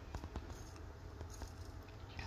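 Quiet outdoor background with a steady low rumble and a few faint, scattered clicks, most of them in the first second and a half.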